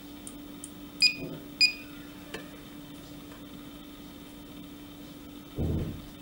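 Analox Ax60+ gas monitor central display giving two short high beeps about half a second apart while its Accept/Test button is held to reset a CO2 alarm, with a faint click after them. A faint steady low hum runs underneath.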